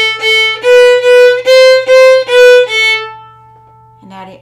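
Violin bowed on the A string, playing eight even notes: open A twice, first finger twice, second finger twice, first finger, then open A. The pitch steps up and back down, and the last note rings away near the end.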